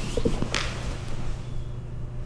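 Brief shuffling and a short sharp sound about half a second in, from two grapplers moving on a mat, over a steady low hum.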